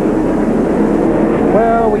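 NASCAR stock cars' V8 engines running steadily as the cars circle the track. A man's voice starts near the end.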